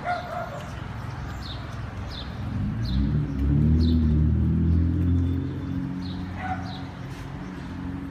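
Street sounds: a small bird chirps repeatedly, a short chirp every half second or so, while a motor vehicle's engine swells past in the middle, rising and falling in pitch.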